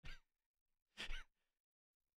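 A man giving two short breathy laughs through the nose, the first right at the start and the second about a second later.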